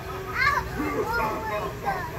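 A young child's excited vocalizing without words: a few short, high squeals that slide up and down in pitch.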